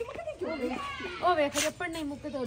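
Several people talking at once, their voices overlapping in casual chatter.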